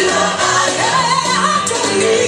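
Gospel song with choir and lead voices singing a sustained melody over held bass notes.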